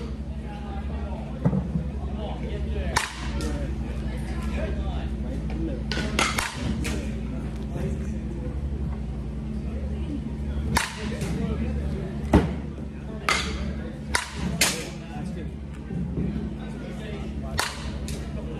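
Softball bat hitting pitched softballs, a sharp crack with each contact. The hits come every few seconds and closer together in the second half, over a steady low hum.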